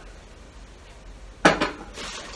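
A single sharp metallic clank about one and a half seconds in, with a short ring, as brass figurines knock together while they are handled in a carrier bag.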